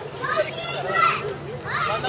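A group of young people's voices talking and calling out over one another.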